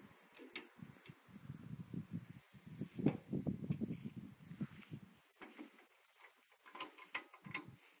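Faint, irregular metallic clicks and knocks from parts of a 1941 John Deere Model B tractor being worked by hand while its engine is still stopped, as it is readied for hand-starting. The loudest knock comes about three seconds in.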